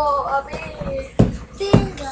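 A child's high voice making wordless, sing-song sounds, followed by two sharp knocks in quick succession past the middle.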